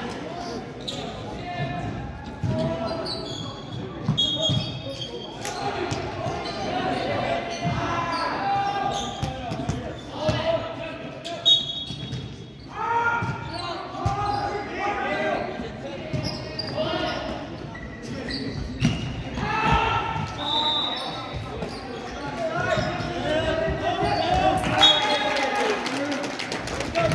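Volleyballs being hit and bouncing on a hardwood gym floor, with sharp smacks now and then, under players' voices and chatter in a large, reverberant gymnasium.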